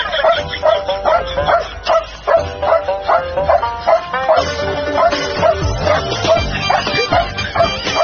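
A dog barking rapidly and repeatedly, about three barks a second, over background music.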